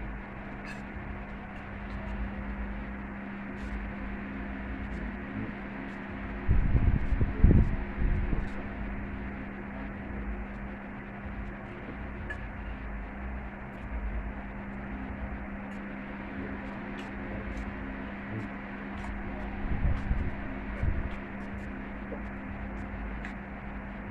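Fork clicking and scraping lightly on a plate while a steady electrical hum runs underneath. Louder low thumps come about seven seconds in and again around twenty seconds.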